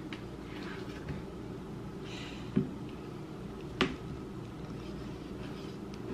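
Small, dull kitchen knife working into the hard rind of a whole watermelon on a cutting board: a couple of short knocks, about two and a half and four seconds in, over a steady low hum.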